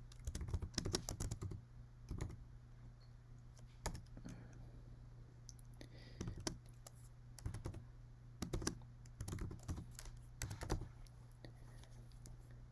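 Typing on a computer keyboard: groups of quick keystrokes separated by short pauses, over a faint steady low hum.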